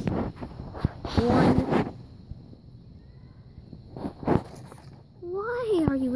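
A child's voice in two short stretches, about a second in and again near the end, with a brief knock in between and low background between them.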